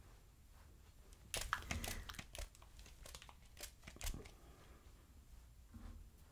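Fingers working through the synthetic fibres of a wig, giving a run of irregular crinkling and rustling crackles that starts about a second in and lasts about three seconds.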